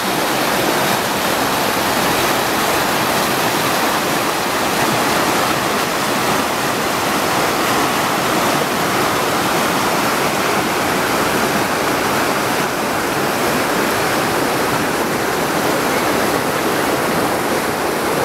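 River water rushing steadily over rapids, the river running high with the extra flow from a reservoir release.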